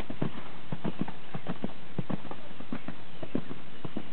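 Horse hooves striking sand arena footing at a canter: a fast, steady run of dull thuds falling into quick groups of three.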